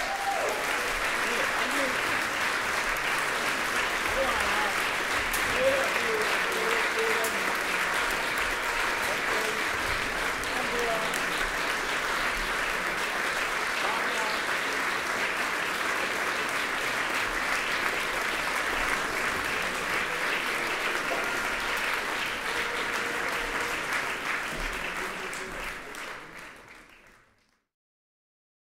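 Audience applauding steadily, with some voices calling out in the crowd. The applause fades out near the end.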